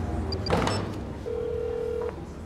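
A mobile phone call being placed: two short high beeps, a sharp knock, then a steady single-pitched ringing tone of the outgoing call that starts a little past halfway and holds, over a low background hum.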